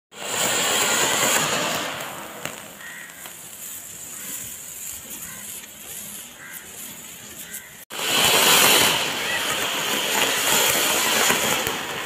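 Ground fountain fireworks (flower pots) hissing steadily as they spray sparks: loud for the first two seconds, softer for a while, then breaking off abruptly about eight seconds in before a fresh loud hiss starts.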